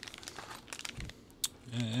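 Small spare-parts packaging being handled and opened: crinkling and rustling with scattered light clicks, a soft thump about a second in and a sharp click shortly after. A man's voice starts near the end.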